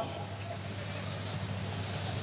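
Steady low hum with a faint background hiss from a public-address microphone setup, with no distinct event.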